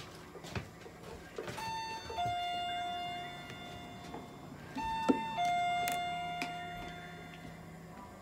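Two-note electronic chime sounding a ding-dong twice, each a short higher note followed by a longer lower note that slowly fades. Light clicks and knocks of handling come between.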